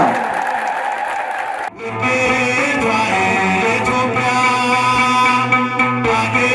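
Voices and crowd noise for the first couple of seconds, broken off abruptly, followed by amplified instrumental music: sustained notes over a steady bass, the backing of an Ethiopian Orthodox hymn (mezmur).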